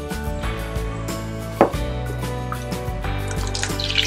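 Background music over the soft clicks of a wooden spoon stirring soup in a steel pot. Near the end, butter starts sizzling in a frying pan.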